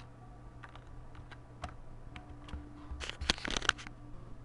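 Computer keyboard typing: a few scattered keystrokes, then a quick run of louder keystrokes near the end.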